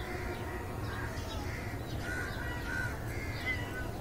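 Birds calling outdoors, short calls scattered through, over a steady low rumble.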